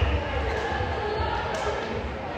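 Spectators' voices and chatter echoing in a school gymnasium, with uneven low thuds from the floor.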